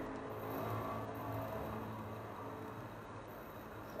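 Quiet room tone: a faint, steady low hum with light hiss.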